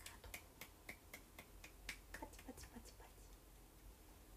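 Faint, evenly spaced clicks, about four a second, over near-silent room tone.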